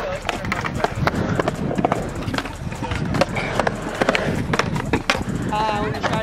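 Trick scooter's wheels rolling on skatepark concrete, with frequent sharp clacks and knocks of the scooter deck and wheels hitting the ground.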